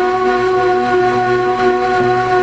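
A ney, an end-blown cane flute, holds one long steady note over a low sustained drone.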